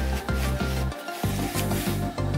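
Background music with a pulsing bass line, mixed with a dry rubbing hiss of a paper towel wiping the metal ball stud of a tailgate gas-strut mount.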